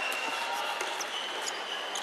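Echoing indoor gym with scattered light taps and knocks of floorball sticks and shoes on the court, over a steady murmur of distant voices in the hall.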